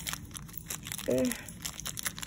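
Small clear plastic packaging bag crinkling in scattered short crackles as hands work to open it. A brief vocal sound comes about a second in.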